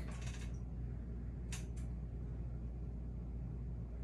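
Tomato-based vegetable juice pouring from a glass bottle into a glass measuring cup, with two faint clinks of glass on glass about a second and a half in, over a steady low hum.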